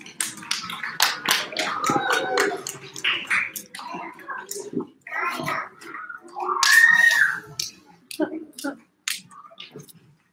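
Indistinct voices with scattered sharp clicks, and a short high tone that rises and falls about seven seconds in.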